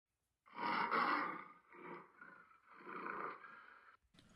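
A big cat roaring three times, the first roar the longest and loudest.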